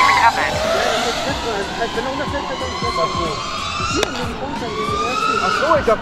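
FPV racing drone motors whining, the pitch rising and falling as the throttle changes, with a single sharp click about four seconds in.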